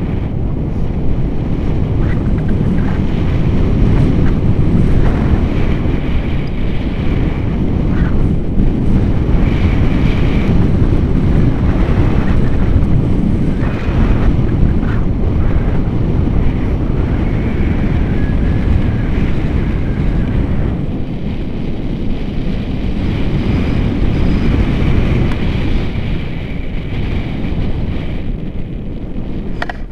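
Wind from the airflow of a paraglider in flight buffeting the selfie-stick camera's microphone: a loud, steady, low rumble.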